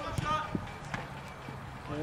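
A brief shout on an open training pitch, then two sharp thuds about half a second apart.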